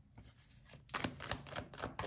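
A tarot card deck being handled by hand: a run of light clicks and taps of the cards, starting about halfway through.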